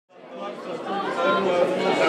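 Voices of several people chattering, fading in from silence over the first second.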